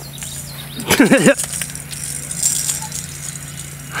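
A fishing cast about a second in: a brief rattling swish of rod and line running off the reel, with a short wavering voiced sound at the same moment. Fainter rustling follows, over a low steady hum.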